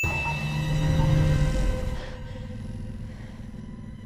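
Film sound mix: a hovering attack drone's deep rumbling hum, loud for the first two seconds and then fading, over tense music with held notes.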